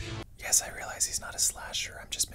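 Whispered speech: a voice whispering unpitched words, with several sharp hissing 's' sounds.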